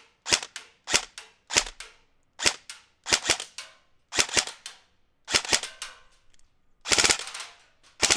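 Elite Force HK416 A5 ERG electric recoil airsoft rifle firing single shots, each a sharp click-crack, often two in quick succession. Near the end comes a short, rapid full-auto burst.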